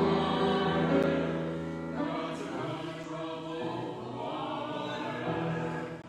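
A small choir of mixed voices singing a hymn in a reverberant stone church nave.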